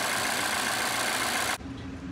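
A 2017 Volvo XC90's supercharged four-cylinder engine idling steadily. One ignition coil is pulled out and wired to a spark tester while a misfire (codes P0300/P0303) is being traced. The engine sound cuts off abruptly about a second and a half in.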